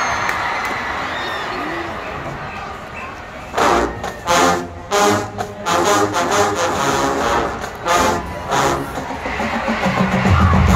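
Marching band brass and drums playing a run of short, loud, punched chords with drum hits, starting about three and a half seconds in, after a few seconds of crowd noise that fades away.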